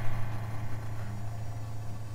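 A steady low hum with no speech over it.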